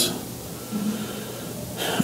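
A pause in a man's speech at a lectern microphone: quiet room tone, then an audible in-breath near the end, just before he speaks again.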